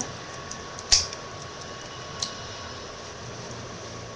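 Plastic Lego pieces handled and pressed together, with one sharp click about a second in and a smaller click a little after two seconds, over a faint steady high hum.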